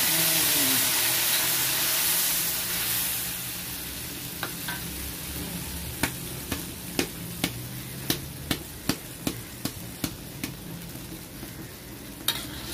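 Blended chili spice paste hitting hot oil in a wok: a loud sizzle that dies down over the first few seconds. Then a metal spatula stirs the paste, clinking against the wok about twice a second.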